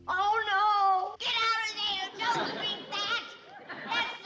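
Wordless human voices: a single wavering vocal cry for about the first second, then a babble of several voices overlapping.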